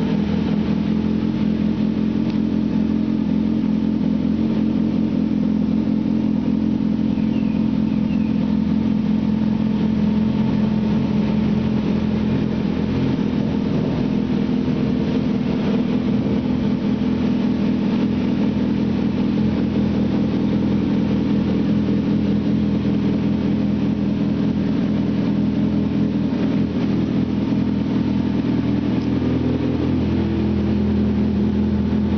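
2009 Kawasaki Ninja ZX-6R's inline-four engine idling steadily, with no revs.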